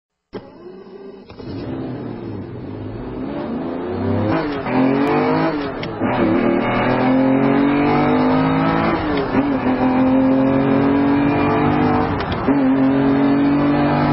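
A car engine accelerating hard through the gears, its pitch climbing and then dropping at each of about four shifts. It starts faint and grows louder over the first few seconds.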